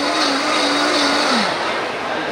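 Vitamix Ascent-series blender running at high speed on a hot soup, then switched off about a second and a half in, its motor pitch falling as it winds down. It is stopped by hand, before the program's own slowdown.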